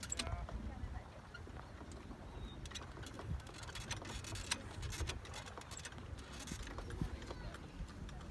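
Faint outdoor background: a low, uneven rumble with scattered light clicks and no clear single source.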